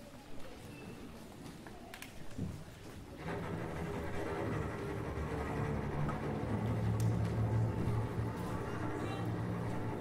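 String orchestra of violins and cellos beginning to play after about three seconds of quiet hall, entering suddenly with low, sustained notes that swell slightly.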